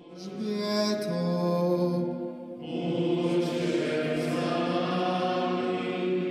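Slow sung liturgical chant with long held notes, in two phrases, the second beginning about two and a half seconds in.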